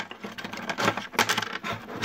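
Small steel valve-train parts (valve springs, retainers, rotators) clinking against each other as they are picked up and handled: a quick, irregular run of small metallic clicks.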